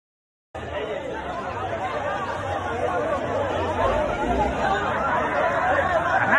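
Crowd chatter: many overlapping voices talking at once in a tightly packed group, cutting in suddenly about half a second in.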